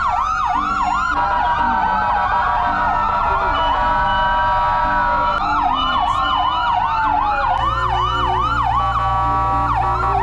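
Several electronic sirens on volunteer fire trucks and an ambulance sounding together: fast yelping sweeps of about four a second over slower wails and steady held tones. The sirens are sounded as a 'last alarm' tribute for a fallen fire volunteer. A low steady hum joins about three quarters of the way through.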